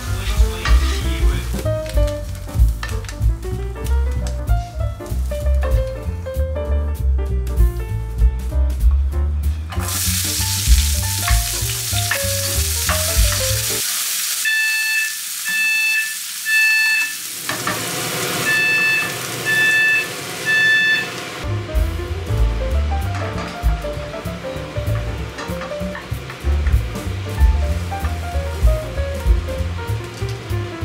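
A household smoke alarm sounds in its three-beep pattern, two rounds of three high beeps, about halfway through. It has been set off by the cooking and sounds over the sizzle of diced onions frying in a pan. Background music with a bass beat plays before and after the sizzle stretch.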